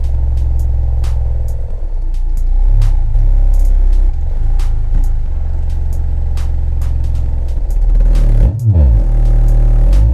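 Rebuilt Orion HCCA-12 12-inch subwoofer playing loud, steady deep bass test tones, with a quick sweep down and back up in pitch near the end. It plays clean on test: no rubbing, pops or other funny noises from the new cone, spiders and surround.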